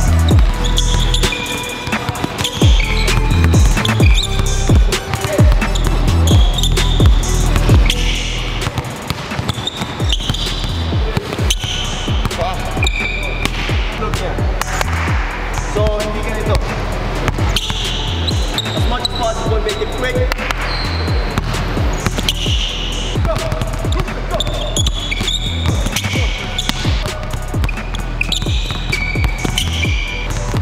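Several basketballs dribbled on a hardwood gym floor, a dense run of quick bounces throughout, over background music with a steady bass.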